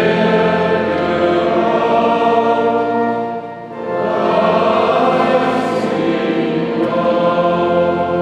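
Choir singing sacred music in sustained chords, in two phrases with a short break about three and a half seconds in.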